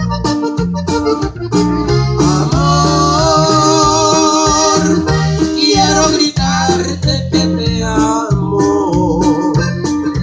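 A norteño band playing an instrumental break. The button accordion carries the melody, with long held, wavering notes in the middle, over acoustic guitar, electric bass and a drum kit keeping a steady beat.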